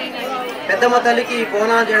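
Speech: a voice talking, with crowd chatter behind it.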